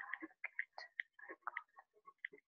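A quick, irregular run of light clicks and taps, about six a second.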